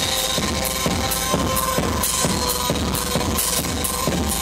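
Live band playing loud instrumental music: a driving drum-kit beat with a cymbal stroke about twice a second over a sustained droning tone from the guitar or electronics.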